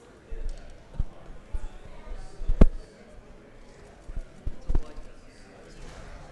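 A few dull thumps and knocks, the loudest about two and a half seconds in and three more close together near the end, over a low murmur of voices in a large room.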